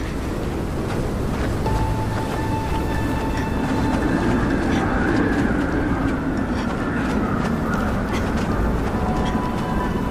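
Blizzard wind blowing steadily, with a low moan that swells about halfway through and then falls back, under soft background music with long held notes.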